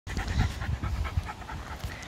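Patterdale terrier panting fast, about eight breaths a second, close to the microphone.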